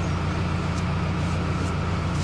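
A wide-beam canal boat's inboard engine running at idle, a steady low drone, throttled back for the slow approach to the mooring.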